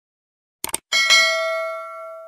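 Subscribe-animation sound effect: a quick double click, then a bright bell ding about a second in that rings on and slowly fades.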